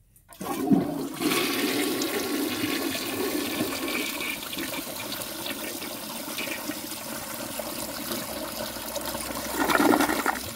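Briggs Ambassador toilet flushing: water starts rushing a moment in and swirls steadily through the bowl, with a louder surge just before the end. The flush carries away a rag dropped into the bowl as a clog test, leaving the bowl clear.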